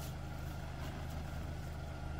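Toyota RAV4's engine idling as the SUV creeps slowly forward, a steady low hum.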